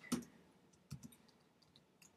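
Faint clicking of computer keyboard keys being typed: a short tap at the start, then a quick run of soft keystrokes about a second in.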